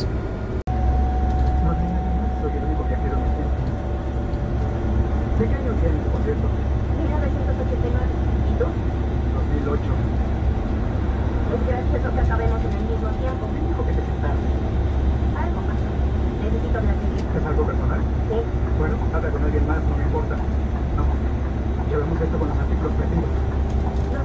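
Steady low drone of a coach bus's engine and tyres at highway speed, heard from inside the cabin, with a brief dropout about half a second in. A faint steady whine sits over it for the first half.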